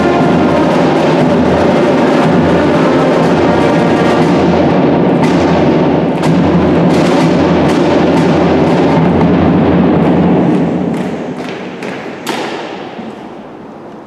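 Cadet marching band of brass and drums playing, with a sousaphone on the low part and drum strokes through it. The music dies away about ten and a half seconds in, and one last sharp percussion hit near the end rings on in the reverberant arena.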